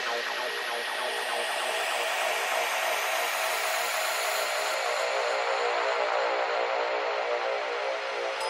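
A breakdown in a full-on psytrance track: layered synths pulse in a fast even rhythm over sustained tones, with the kick drum and bassline dropped out.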